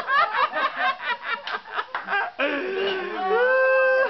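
A woman overcome with emotion: quick broken bursts of voice like sobbing laughter, then a long high drawn-out wail from about two and a half seconds in.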